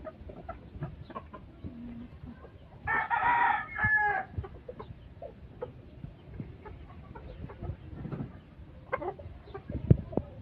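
A gamefowl rooster crows once, about three seconds in, a loud pitched call of just over a second, with scattered soft clucks around it. A single sharp knock comes just before the end.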